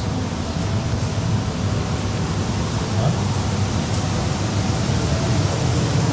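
Steady, even rushing noise of a large supermarket's ventilation and room ambience, with faint distant voices.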